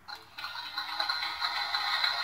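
A recorded sound effect played through the tinny little speaker of a handheld sound-effects box, starting about half a second in and running on steadily.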